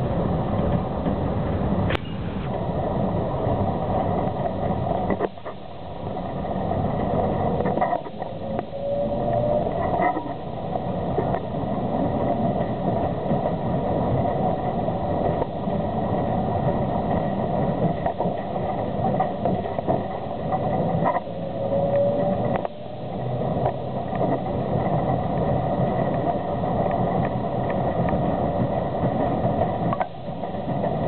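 Tram running along the track: steady wheel and running noise, with a rising whine about eight seconds in and again about twenty-one seconds in.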